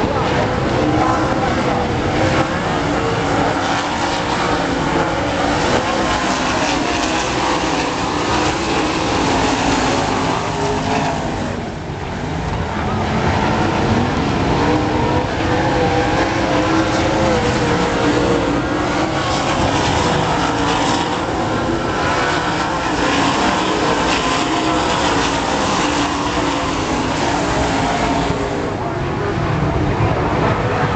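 A pack of winged sprint cars racing on a dirt oval, their V8 engines running hard together, the pitch wavering up and down as the cars go through the turns. The sound eases briefly about twelve seconds in, then comes back up.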